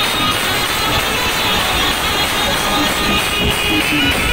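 Indian street brass band playing a song, trumpet and saxophone over a steady percussion beat, loud and continuous.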